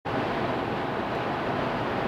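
Steady road noise inside a car's cabin at freeway speed: tyre and wind noise with a low engine hum.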